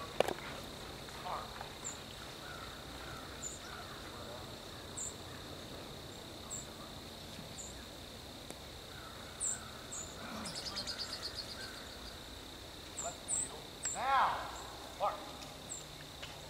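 Open-field ambience of insects: a steady high drone with short high chirps about once a second and a brief rapid trill a little after the middle. A sharp click comes just after the start, and a man's voice calls out near the end.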